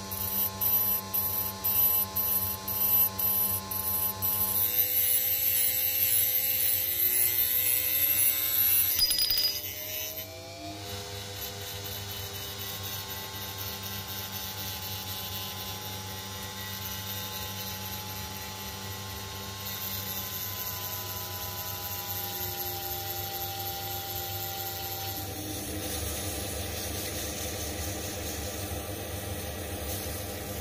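Small metal lathe spinning a glass tube while a rotary tool's abrasive cut-off disc cuts into the glass: motor whine with grinding. It is louder and pulsing for the first nine seconds or so, gives a rising whine about ten seconds in, then runs steadier and quieter.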